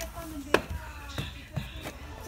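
A sharp click about half a second in and a few lighter knocks after it, over faint background music and voices.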